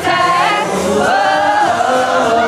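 Live pop song over a PA: male singers on microphones over backing music, with several voices singing together.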